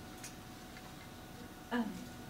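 Quiet room tone with a faint steady hum and a soft click about a quarter second in, then a person saying "um" near the end.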